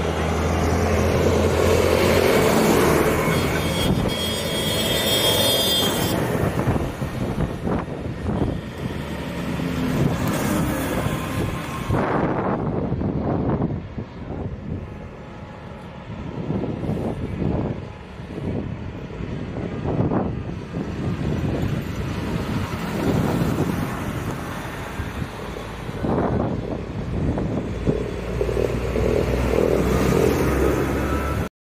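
Tractor engines running as a convoy of farm tractors drives past, mixed with road traffic noise. The sound is loudest at the start and again near the end, when vehicles pass close, and eases in the middle.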